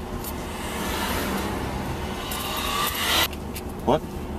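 Highway traffic going past the parked car, heard from inside it: a rushing noise that builds for about three seconds and then cuts off suddenly, followed by a short rising squeak just before the end.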